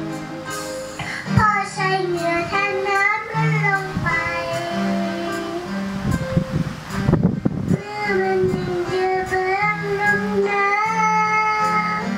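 A young girl singing a melody into a handheld microphone, holding and bending her notes, over backing music with steady low notes. Her voice drops out briefly about seven seconds in, then resumes.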